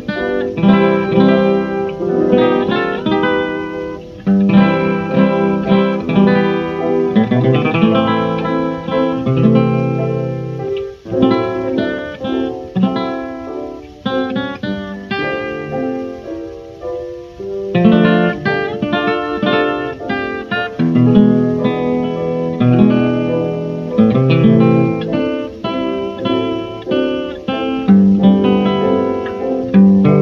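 Instrumental 1920s jazz guitar recording: a plucked guitar picks out a melody with chords over low sustained accompaniment notes.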